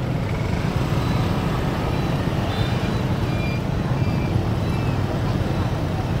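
Street traffic of scooters and motorbikes heard from a slowly moving motorbike: a steady low rumble with no sudden events.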